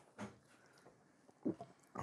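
A man swallowing a mouthful of soda: two short throaty gulps about a second apart, the second louder, then a breath out right at the end.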